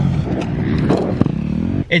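Dirt bike engine being ridden on a motocross track, its pitch rising and falling as the rider works the throttle.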